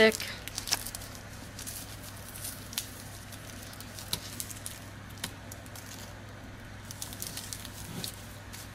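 Interfolded wax paper crinkling and rustling in irregular little bursts as it is folded by hand around a bar of soap, with a faint steady hum underneath.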